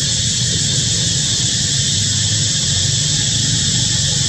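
Steady high-pitched buzzing chorus of insects in the trees, with a low hum beneath it.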